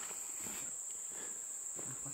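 Crickets chirping in a steady, high-pitched night chorus.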